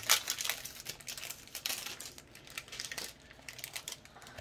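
Foil wrapper of a trading-card booster pack crinkling as it is handled and opened: an irregular run of crackles, loudest in the first second, then fainter.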